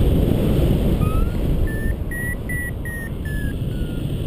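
Paragliding variometer beeping its climb tone in a thermal. It gives a short rising chirp, then about five short beeps some two and a half a second that rise a little in pitch and sag lower near the end, as the lift of a thermal too small to climb in fades. Steady wind is rushing on the microphone throughout.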